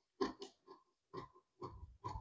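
Tailor's scissors cutting along a curved line through a paper blouse pattern: a series of faint, separate snips, roughly two a second.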